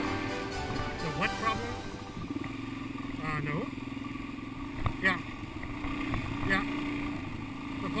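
Suzuki DR-Z400 dual-sport motorcycle's single-cylinder four-stroke engine running steadily, its note holding level while riding a dirt trail.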